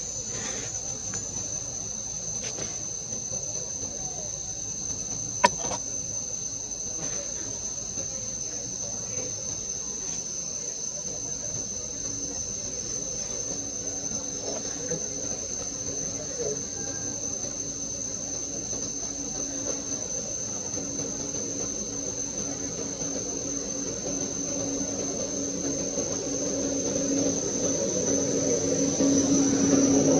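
Steady high-pitched insect chorus, with a low hum that comes in partway through and grows louder toward the end, and a single sharp click about five seconds in.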